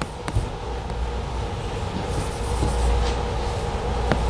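Steady low room hum with chalk writing on a blackboard: a sharp tap of the chalk shortly after the start and faint scratching strokes about halfway through.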